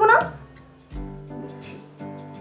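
A woman's voice finishes a line in the first half second, then background music plays softly: sustained notes held steady.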